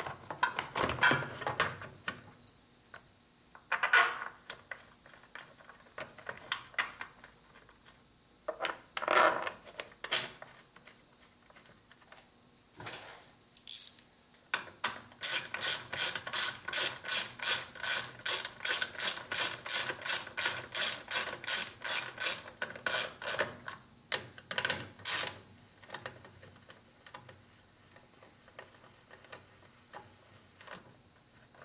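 Scattered knocks and clicks of a plastic engine top cover being fitted and clipped onto the shroud. About halfway through, a socket ratchet clicks in a fast, even run of about four clicks a second for several seconds as the cover's bolts are run in.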